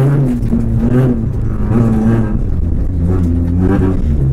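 Rally car engine heard from inside the cabin, under hard throttle on a dirt stage, its pitch rising and dropping several times as the driver accelerates and shifts.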